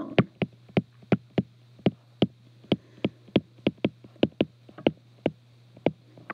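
Stylus clicking on a tablet screen while handwriting words: about twenty sharp clicks at an uneven pace of roughly three a second, over a faint steady low hum.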